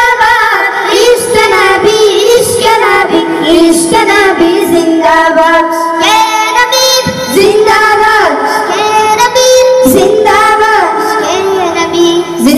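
A group of boys singing an Islamic devotional song together into handheld microphones, their voices amplified through a sound system.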